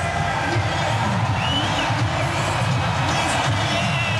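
Music playing loudly over a large arena crowd cheering, with whoops and shouts rising out of it.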